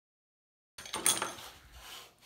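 Silence, then from just under a second in, clicks and a short clatter of a small quadcopter being handled on a workbench mat, followed by quieter handling noise.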